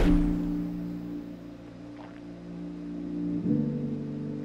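The opening of a viewer's instrumental beat played back: sustained low chords, held and fading, with a new, fuller chord coming in about three and a half seconds in.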